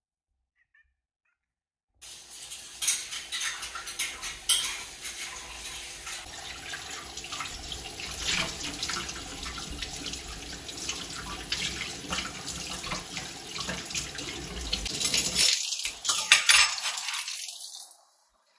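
Water running from a tap into a kitchen sink, with occasional clatter of things being handled under it. It starts suddenly about two seconds in.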